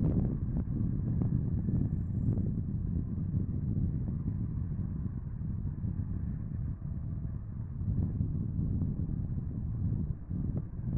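DB class 218 diesel-hydraulic locomotive running with a yellow measurement train as it rolls slowly through the station, a steady low engine rumble.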